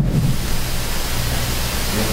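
Steady hiss with a low hum underneath, the background noise of the room and sound system between spoken lines.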